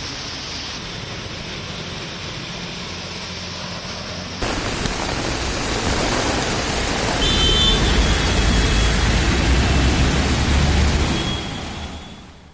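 Field sound of monsoon rain and water: a steady hiss of surf and rain for the first four seconds, then an abrupt cut to a louder, rushing noise of rain and flowing floodwater that fades near the end.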